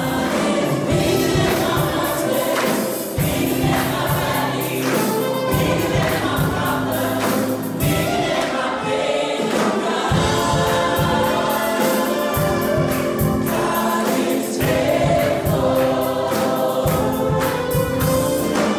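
Gospel worship song sung by a choir over a band with a steady beat.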